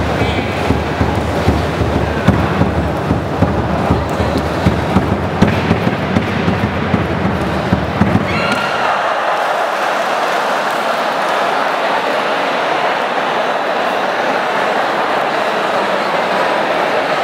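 Noise from a crowd in a sports hall, with rapid irregular loud beats through the first half, typical of the drums played during traditional Vietnamese wrestling bouts. The beating stops about eight seconds in as one wrestler takes the other down, leaving a steady crowd roar.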